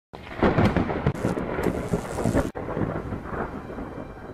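A loud crackling rumble, like a thunderclap. It breaks off abruptly about two and a half seconds in, then carries on more quietly and fades.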